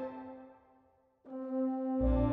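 Instrumental film-score music: a held note fades away almost to silence, then a held note comes back in suddenly just over a second in.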